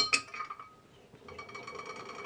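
A glass flask clinks once sharply at the start and rings briefly. From about a second and a half in, a magnetic stirrer hotplate's motor starts up with a steady, slowly swelling whine.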